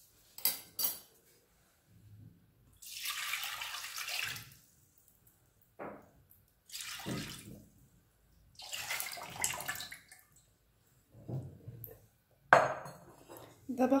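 Milk mixture poured from a glass bowl into a stainless steel pan in four pours of a second or so each, with short knocks of glass and metal between them and a sharper knock near the end.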